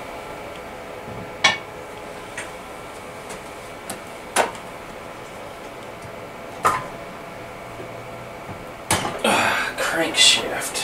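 Sharp metal clicks and knocks, a few seconds apart, from engine parts being handled on a workbench during the teardown of a Kohler KT17 cast-iron twin, then a short run of clattering near the end. A faint steady hum runs underneath.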